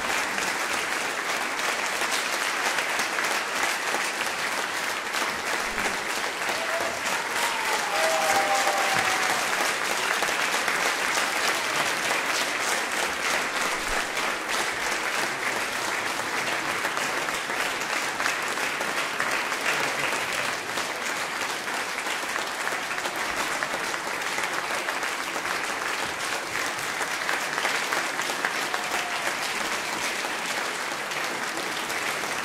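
Audience applauding steadily, a dense even clapping from a full hall.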